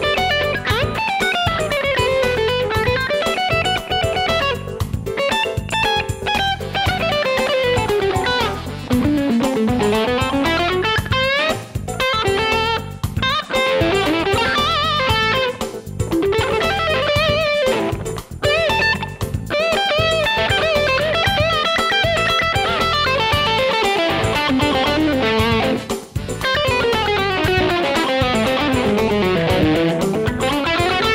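Music Man Reflex electric guitar, with a chambered basswood body and maple top, played as a lead solo. It runs fast single-note lines that sweep down and back up the neck.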